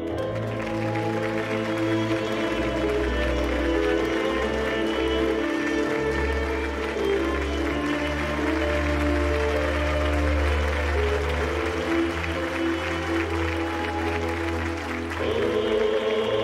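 Theatre audience applauding over sustained background music; the applause starts suddenly and dies away near the end, leaving the choral music.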